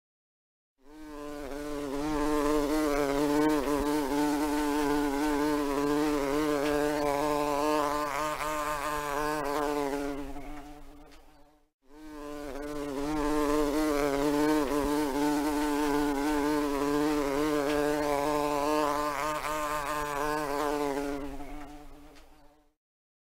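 Bumblebee buzzing: a wavering, pitched drone that fades in, runs about ten seconds and fades out, then plays a second time.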